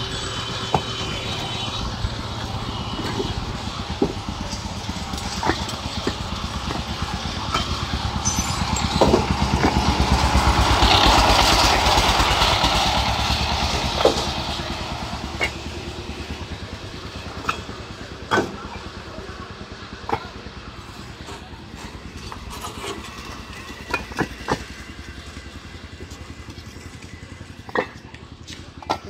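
Single-cylinder diesel engine of a two-wheel power tiller running with a fast, even chugging. It grows louder to a peak about halfway through, then fades as the tiller pulls its trailer away, with occasional sharp knocks and rattles.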